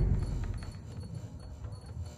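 Horror-film soundtrack: a loud sound dies away over the first half-second, leaving a faint low rumble with faint, high-pitched ticking.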